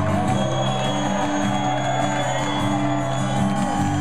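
Live acoustic guitar music: held chords ringing under a sung melody line, recorded from far back in a concert audience with crowd noise around it.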